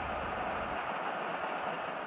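Leopard 2A5 main battle tank driving across gravel, a steady rushing noise from its tracks and engine.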